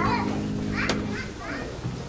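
Children's voices and quiet chatter from the congregation, with a single sharp click just before a second in. A steady low tone underneath stops a little past a second in.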